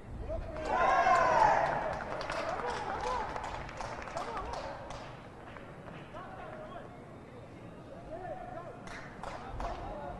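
Excited male voices shouting as a goal goes in, loudest about a second in and then dying down, with a run of short sharp knocks through the first half and a few more near the end.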